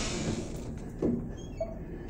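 Quiet movement through an empty room, with one short soft knock about a second in.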